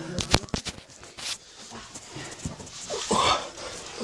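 Heavy breathing and a short strained vocal grunt from a man squeezing through a tight rock crevice. A quick run of sharp knocks and scrapes against the rock comes in the first second.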